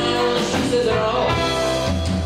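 Live band playing a song, with electric guitar over bass and drums, recorded on a small camera from the back of a theatre.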